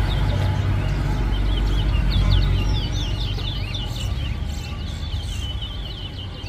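Caged male towa-towa (chestnut-bellied seed finch) singing a fast, twittering warbled song that starts about a second in and runs on, over a steady low rumble.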